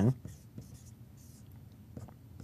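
Whiteboard marker writing on a whiteboard: a few faint, short scratchy strokes.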